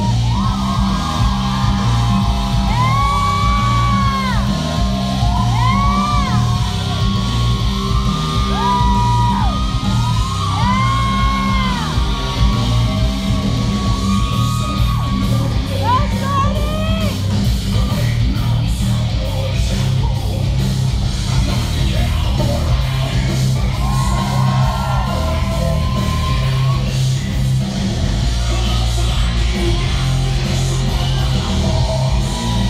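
Loud rock music with a heavy, steady bass line, over which audience members yell and whoop in short rising-and-falling cries, thickest in the first half and again briefly about two-thirds of the way through.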